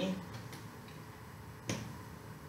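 A single sharp tap from the cardboard boot box being handled on the desk, about three-quarters of the way in, after a fainter tick.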